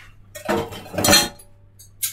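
A clatter of dishes and cutlery being handled, with two loud spells about half a second and a second in.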